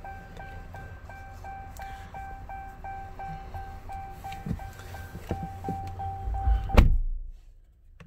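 The Ram 1500's cab warning chime beeps rapidly, about three tones a second, with the ignition on. Near the end a door shuts with a heavy thunk and the chime stops.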